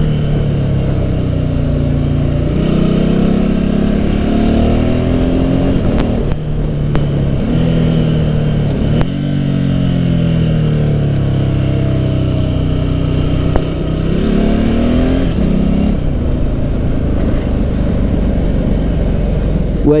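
Ducati Hypermotard's L-twin engine under way, its pitch climbing and falling again and again as the throttle opens and closes through the bends and gear changes.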